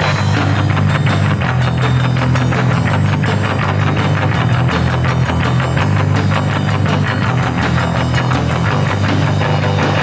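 Loud, fast punk rock music: distorted electric guitar, bass and drums driving a steady, rapid beat without a break.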